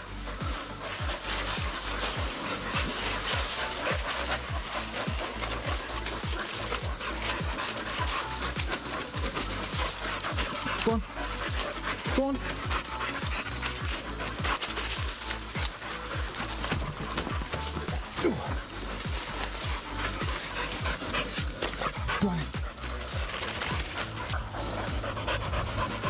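A dog panting rhythmically close by, mixed with the steady scuffing and rustling of walking on a leaf-covered woodland path.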